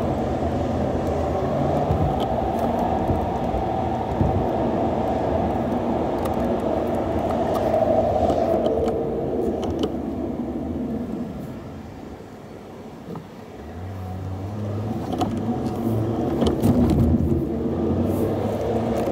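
Car driving in city traffic: steady road and engine noise that falls away about twelve seconds in as the car eases off at a roundabout, then builds again with a low engine hum as it pulls away.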